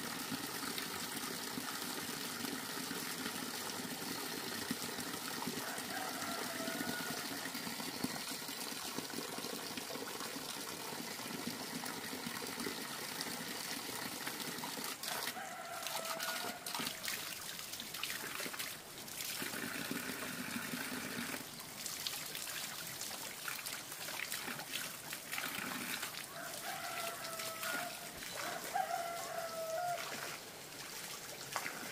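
A rooster crowing several times: a few seconds in, around the middle, and twice near the end. Under it runs a steady hiss of running water, with a few sharp knocks in the middle.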